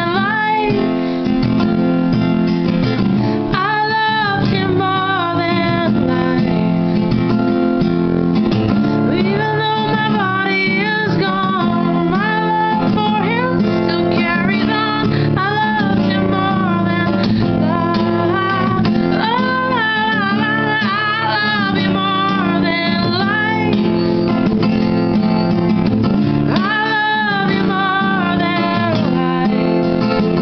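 Acoustic guitar strummed steadily, with a woman singing over it in long, bending held notes.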